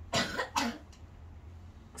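A child coughing twice in quick succession.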